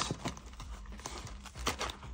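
Light taps, clicks and faint rustling of a cardboard trading-card booster box being handled and opened, with a slightly louder cluster of clicks near the end.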